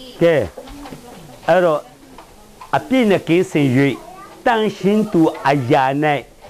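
Speech only: a man talking in phrases with short pauses.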